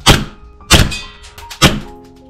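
Tokyo Marui Hi-Capa gas blowback airsoft pistol, fitted with a 200 mm Maple Leaf precision inner barrel, firing three single shots through a chronograph. Each shot is a sharp crack of gas and cycling slide, the shots a little under a second apart.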